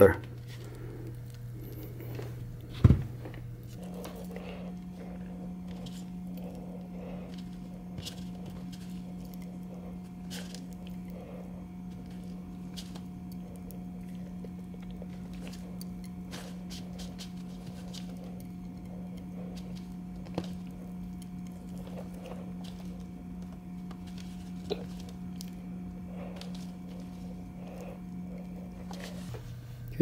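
Faint scattered clicks and ticks of greased steel needle rollers being pressed into a Muncie countergear's bore by a gloved finger, with one sharper click about three seconds in. A steady low hum runs underneath; it steps up in pitch about four seconds in and drops back near the end.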